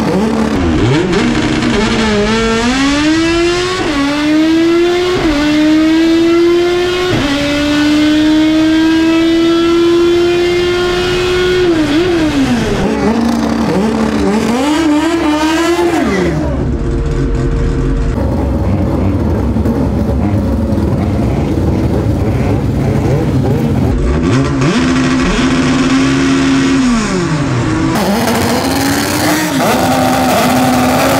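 Naturally aspirated Honda drag car making a full-throttle quarter-mile pass. The engine revs climb through four quick upshifts, each a sharp drop in pitch, in the first seven seconds, then hold a long high note for about five seconds before falling as the driver lifts off at the finish. After a cut comes a stretch of rushing noise, and near the end another engine revs up and down.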